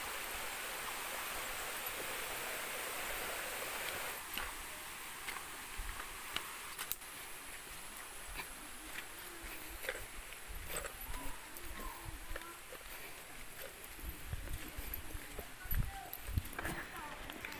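Footsteps and scuffs of people walking on a dirt forest trail, with scattered clicks and low thumps. A steady rushing noise fills the first few seconds, then stops.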